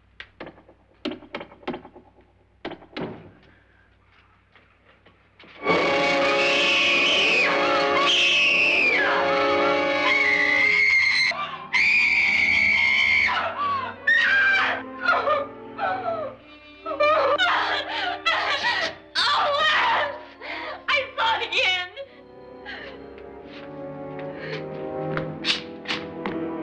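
Several sharp knocks on a wall, then about six seconds in a sudden loud orchestral music sting with a woman screaming in long, repeated screams. Shorter broken cries follow, and brass-led music grows louder near the end.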